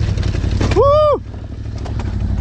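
Yamaha Raptor quad's single-cylinder engine running steadily, then quieter from about a second in as the throttle eases. Over it comes a short shout that rises and falls.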